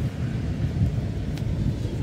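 Wind rumbling and buffeting on the microphone, a steady uneven low rumble.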